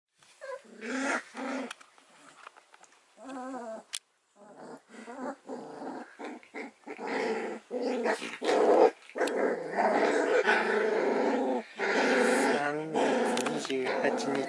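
Young standard poodle puppies making short whines and small growls in the first few seconds, with more dog vocalising under a woman's speech and laughter from about halfway on.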